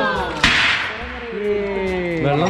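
A bucket on a rope being hauled up out of a well: a sharp slap about half a second in, then a brief splashing rush of water that fades quickly.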